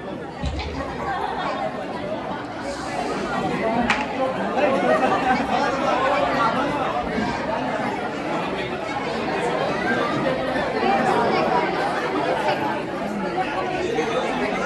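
Crowd of wedding guests chattering in a large hall, many voices overlapping in a continuous babble that grows louder over the first few seconds. A single sharp click sounds about four seconds in.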